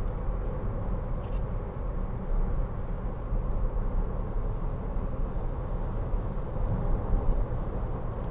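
Inside the cabin of a 2013 Audi Q3 2.0 TDI four-cylinder diesel cruising on a motorway just under 70 mph at about 2000 rpm: a steady low rumble of road and tyre noise with engine hum.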